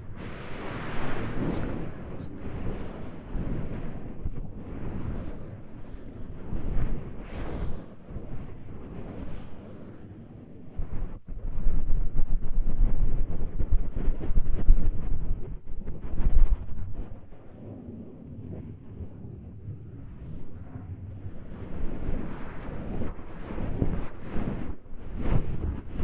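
Hands rubbing and kneading the silicone ears of a 3Dio binaural microphone in a rough ear massage: a rushing, rumbling friction noise that swells and fades stroke by stroke, loudest for several seconds in the middle.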